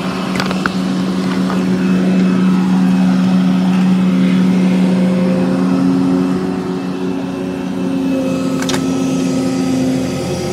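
Volvo excavator's diesel engine running steadily under working load, with one sharp click near the end.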